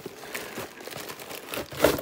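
Plastic bag crinkling and a cardboard box rustling as a bagged set of spare RC car wheels is pulled out of the box, with a louder crinkle near the end.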